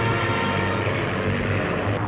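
Steady drone of propeller aircraft engines in flight.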